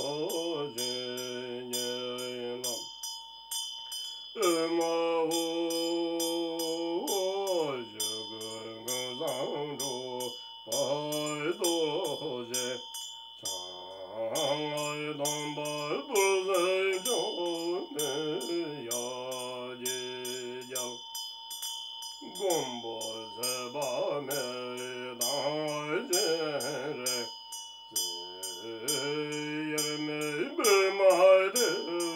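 A Tibetan lama chanting a devotional song solo, in long held notes that glide between pitches, with short pauses for breath between phrases.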